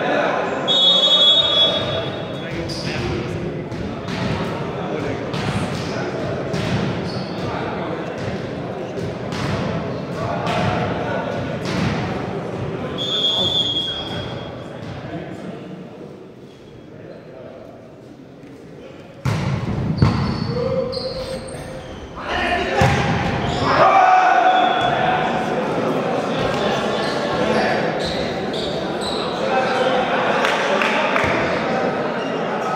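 Volleyball thuds echoing in a large sports hall: a run of ball impacts under players' voices, a quieter lull, then one sharp loud hit about two-thirds of the way in, followed by a rally with shouting.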